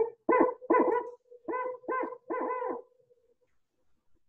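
Recorded barred owl song, heard over a webinar's screen share: six hoots in two groups of three, the last one drawn out, the 'who cooks for you' call.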